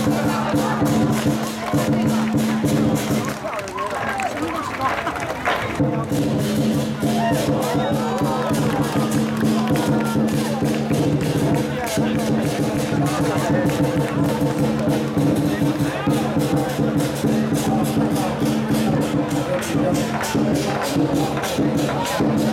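Lion dance percussion: war drums beaten rapidly with clashing cymbals and a ringing gong. It breaks off briefly about four seconds in, then starts again. A crowd talks underneath.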